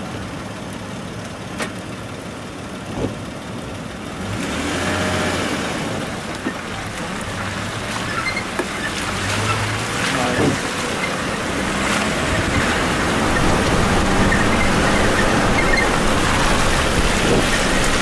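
Engine and road noise inside an off-road SUV driving a muddy dirt road: a steady engine drone with tyre and gravel noise and occasional knocks from the body over bumps. It grows louder about four seconds in and again past the middle.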